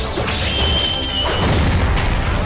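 Dramatic fight music with added battle sound effects: crashing impacts and whooshes as a glowing spear strikes, and a high metallic ringing tone about half a second in that steps up in pitch near the middle.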